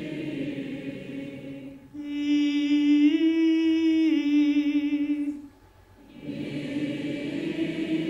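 An audience sings a held vowel together, and near the 2-second mark a lone mezzo-soprano voice takes over. She holds a sung note that steps up a tone and back down again. After a brief pause the crowd sings the phrase back in unison, as a call-and-response vocal warm-up.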